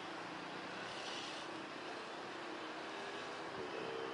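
Steady jet engine noise from a Citilink Airbus A320-family airliner on the runway. Motorbike and car engines pass close by, with a rising engine tone near the end.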